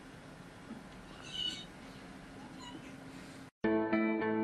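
A cat meows once, briefly, about a second in, over faint room hiss. Near the end the sound cuts out and music starts, louder than anything before it.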